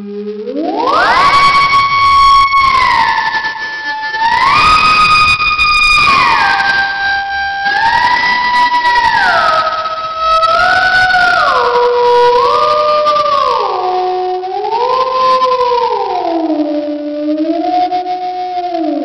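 Theremin-style synth voice of the Thereminator iPhone app playing a slow melody, sliding smoothly between held notes with no breaks. It swoops up in the first second or so, then glides gradually downward in pitch through the rest.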